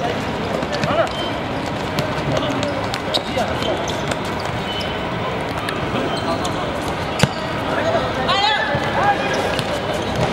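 Amateur football match on a hard outdoor court: players' and onlookers' indistinct voices calling out, with scattered knocks of the ball being kicked and bouncing on the hard surface, the sharpest about seven seconds in.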